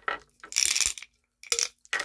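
Small tumbled crystal stones rattling and clinking inside a glass jar as it is shaken to get more out, in two short bursts.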